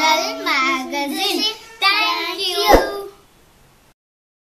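Young children's voices in a sing-song chant, stopping about three seconds in.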